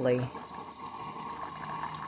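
Famiworths single-serve coffee maker brewing, a thin stream of coffee running into a ceramic mug: a steady trickle and hiss with a faint steady hum.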